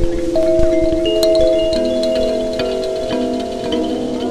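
Electric kalimba in a minor key, its metal tines plucked and their notes repeated by delay effects, so the notes pile up into a ringing, slowly fading chord. Near the end the pitch of the repeats begins to bend.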